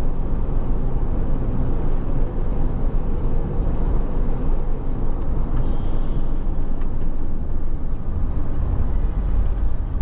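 Steady low rumble of a car driving on a city road, heard from inside the cabin: tyre and engine noise at a constant speed.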